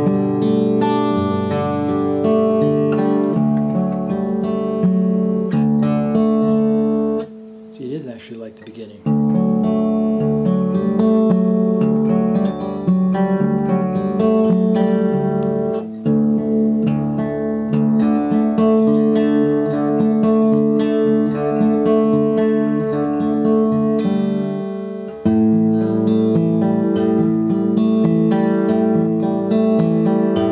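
Steel-string acoustic guitar fingerpicked in a repeating picking pattern through the chord changes of a song's chorus. About a quarter of the way in the playing breaks off for a second or so, then resumes.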